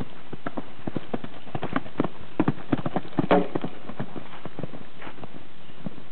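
Hoofbeats of a horse cantering on a sand arena, an uneven run of knocks that grows louder in the middle. A brief pitched sound about three seconds in is the loudest moment.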